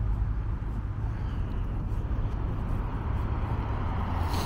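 Steady low vehicle rumble with no separate events, the kind heard from a car rolling slowly.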